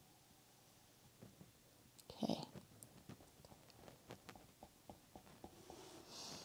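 Near silence: quiet room tone with scattered faint small clicks, and one brief soft sound about two seconds in.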